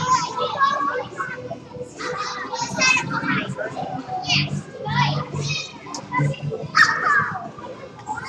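Many young children shouting and chattering at once as they play in a school gym, with one louder cry about seven seconds in.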